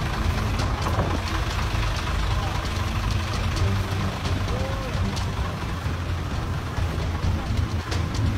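Truck engine idling, a steady low rumble, with voices faintly over it.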